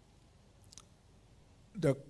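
Quiet pause with a faint low room hum and a brief soft click about two-thirds of a second in. A man's voice resumes through the microphone near the end.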